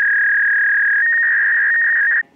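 A loud, steady electronic beep tone at a single pure pitch, which steps up slightly about a second in.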